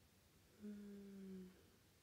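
A woman's short closed-mouth hum, an "mm", held for about a second from about half a second in, dropping slightly in pitch.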